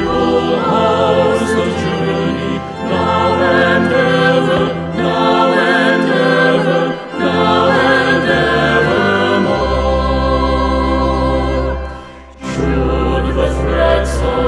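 A few voices singing a hymn together over pipe organ accompaniment, with long held low organ notes beneath. The music drops off briefly about twelve seconds in, then the next verse begins.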